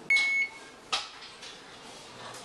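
Oven's electronic timer giving one short, high, steady beep: the kitchen timer has run down to zero. A single short click follows about a second later.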